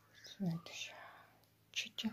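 A soft whispered voice: a short low murmur about half a second in, then breathy hissing, and a brief sharp hiss near the end.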